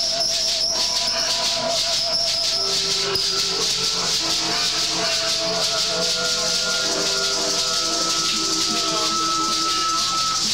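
Live band jamming: held guitar notes ring over a steady rattling shaker rhythm, with a long sustained note through the second half.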